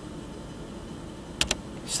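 Faint steady room hiss, then two quick computer-keyboard clicks close together about a second and a half in.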